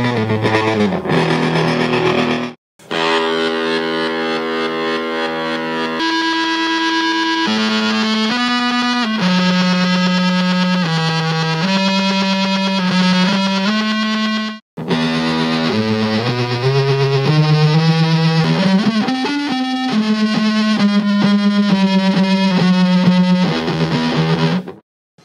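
Electric guitar played through a Big Muff fuzz pedal whose distortion is swept up and down by an Arduino driving a digital potentiometer, putting a rhythmic gating pulse on the held notes and riffs. The playing cuts out abruptly twice, briefly.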